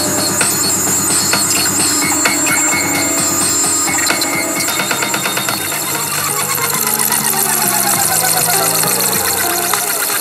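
Instrumental electronic synthpop from an iPad synth and drum-machine app (Aparillo and DrumComputer): a dense beat, then from about six seconds a bass line stepping between notes and gliding synth tones above it.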